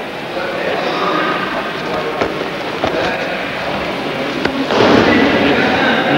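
Background chatter in a sports hall with a few sharp knocks, then near the end a louder rustling noise lasting about a second as a jujutsu practitioner is taken down onto the mat.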